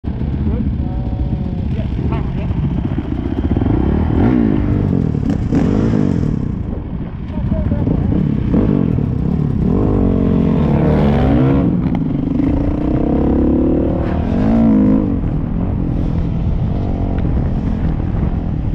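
Dirt bike engines idling and being revved, their pitch rising and falling repeatedly, most strongly in the second half.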